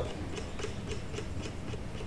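Faint, irregular clicking from scrolling a document on a computer, over a steady low room hum.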